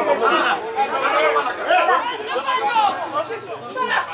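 Several people's voices talking and calling out over one another, a loud stretch of overlapping chatter.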